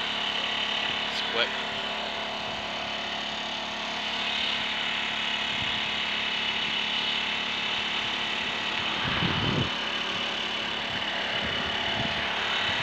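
Steady hum of an idling road-vehicle engine with a thin, steady high whine over it, and a short low rumble about nine seconds in.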